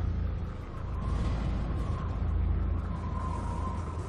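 Cinematic logo-reveal sound effect: a steady deep rumble with a hissing haze above it and a faint thin tone through the middle.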